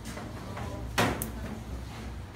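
A single sharp clunk about a second in, from the door of a stainless-steel deck oven being handled, over a steady low hum.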